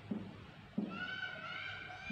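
Whiteboard marker squeaking against the board as it writes: a thin, high squeal in short strokes with brief breaks. It starts about a second in, after a couple of faint taps.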